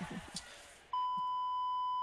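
A brief laugh, then about a second in a steady, high-pitched censor bleep tone starts abruptly and holds level, blanking out a spoken answer.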